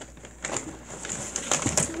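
Cardboard carton and packing being rustled and scraped as a box set is pulled out of it: a run of quick crinkles and scrapes that starts about half a second in and grows louder.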